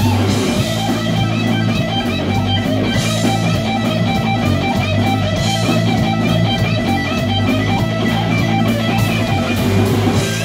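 Live rock band playing loud: a Stratocaster-style electric guitar is strummed over drums and cymbals keeping a steady beat.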